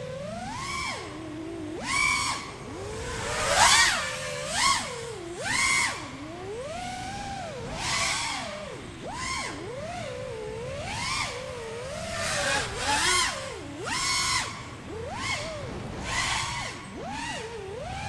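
Racing quadcopter's brushless motors and propellers whining, the pitch constantly rising and falling as the throttle changes, with several short louder rushes of air noise on throttle punches. The motors are flown without the C-clips that hold their rotors on.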